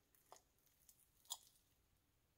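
Near silence with two faint short clicks, the second, a little more distinct, just over a second in.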